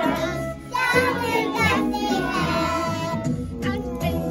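A group of young children singing a song together over instrumental accompaniment, with a brief break between lines about half a second in.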